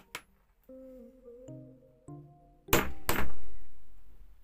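Two sharp hammer blows on a hollow punch, about half a second apart near the end, the second the louder, each ringing briefly, punching a disc out of electrical tape. Soft background music with sustained piano-like notes plays underneath.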